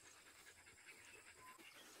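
Near silence with faint panting from a husky.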